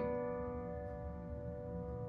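A piano chord held down and slowly fading, its notes ringing on steadily with no new notes struck.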